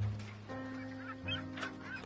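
Gulls calling, a few short calls about midway, over background music of sustained low chords.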